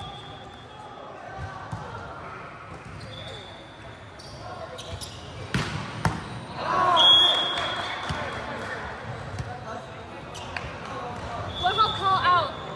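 A volleyball struck twice in quick succession, two sharp slaps about half a second apart around halfway through, followed by players shouting. The sounds echo in a large hall.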